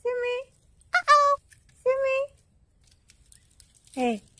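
A domestic cat meowing three times, each meow about half a second long with short silences between, while it is stuck up a tree and cannot get down. A short falling meow starts right at the end.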